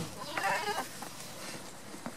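A goat bleats once, a short call about half a second in, after a sharp knock right at the start.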